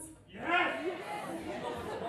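Indistinct talking and chatter from several people in a large hall, one voice standing out about half a second in.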